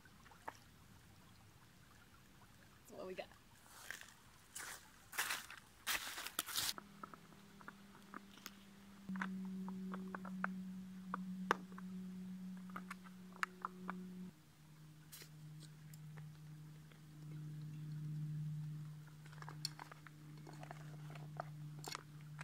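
Rustles and scattered clicks of a soft plastic water-filter pouch and bottle being handled. A steady low hum underneath starts about a third of the way in and drops to a lower pitch about two-thirds of the way through.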